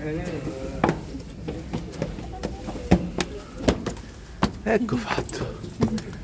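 Indistinct voices with irregular footsteps and knocks as people climb a stone stairway, several sharp clicks spread unevenly through the few seconds.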